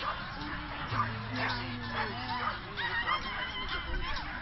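Several dogs barking and yipping among the talk of a crowd, with a steady low hum coming in about a second in.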